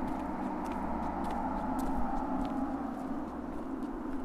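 Footsteps of boots on a concrete walkway, a sharp click roughly every half second, over a steady hiss of outdoor background noise.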